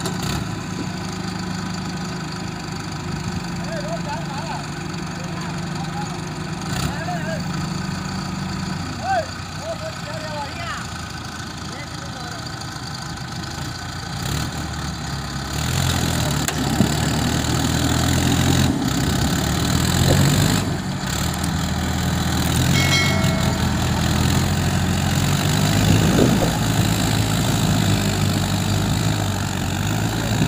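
Diesel engines of a Mahindra Arjun tractor and a JCB 3DX backhoe loader running under load while the bogged-down tractor and its sand-loaded trailer are worked free of soft ground. The engine sound grows louder and more uneven about halfway through.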